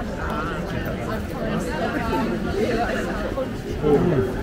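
Background chatter of many overlapping voices from shoppers and stallholders in a busy street market, with no single voice standing out.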